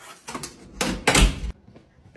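A door being pulled shut, closing with a heavy thud a little over a second in.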